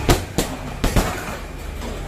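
Kicks landing on hanging heavy punching bags: four sharp thuds in quick succession within the first second, over a steady low hum.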